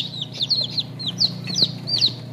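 Newly hatched chicks peeping in an incubator: a steady run of short, high, downward-falling peeps, about four a second, over a steady low hum.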